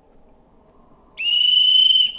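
A single loud, shrill whistle blast that starts a little over a second in, slides up briefly and then holds one high note.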